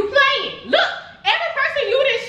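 A raised, high-pitched voice in short excited exclamations, several quick bursts that swoop up and down in pitch.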